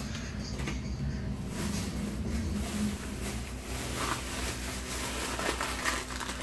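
Rustling and light handling noises with a few soft knocks, over a steady low hum.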